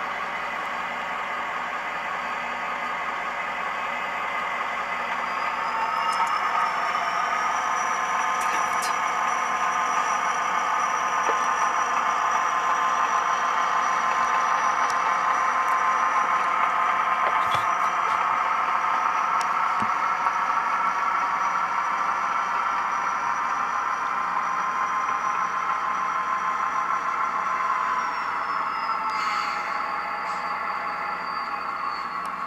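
Tsunami 2 sound decoder in an HO Athearn Genesis SD60E model locomotive playing a diesel engine sound through its small onboard speaker. A few seconds in, the engine note and a high turbo whine rise in pitch and get louder as the engine notches up. They hold steady, then wind back down near the end.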